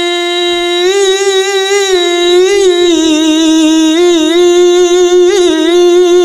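A male reciter chanting the Quran in the melodic tilawah style into a microphone. One long unbroken phrase of held notes, ornamented with wavering turns, with a slight dip in pitch about halfway through.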